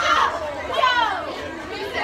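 Teenagers' voices talking and chattering, with one voice close to the microphone; no other distinct sound stands out.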